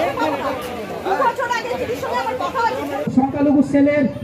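Several people talking over one another, with one man's voice over a public-address system becoming clear near the end.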